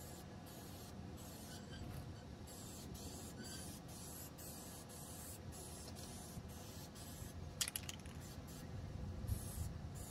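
Aerosol can of white touch-up paint spraying in a run of short passes, a steady hiss broken by brief pauses. A short rattle comes about three quarters of the way through.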